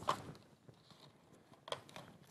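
Near quiet between voices, with a faint short tick near the end from hands handling the foil-lidded paper cups of instant oatmeal.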